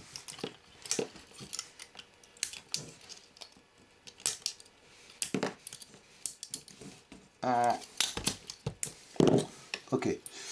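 Small wire cutters snipping through the thin wires that hold a camera circuit board, with irregular sharp clicks and snaps from the board and plastic chassis being handled. A short hum from a man comes about seven and a half seconds in.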